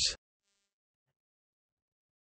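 A synthesized voice finishes a word in the first instant, then silence.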